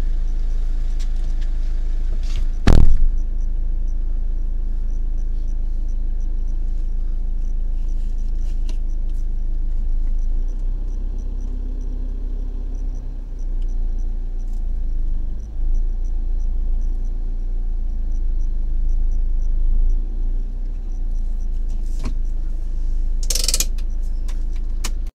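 Vehicle engine idling steadily with a low rumble, a faint regular ticking running through the middle. A loud knock comes about three seconds in and a short burst of noise near the end.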